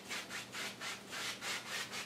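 Wide paintbrush scrubbing back and forth on an oil-painted canvas, blending the sky colours with criss-cross strokes in a steady rhythm of about four or five strokes a second.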